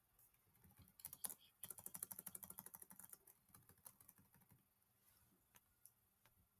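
Computer keyboard keys being pressed: a few faint clicks, then a fast run of keystrokes for about a second and a half in the middle, then a few more scattered clicks.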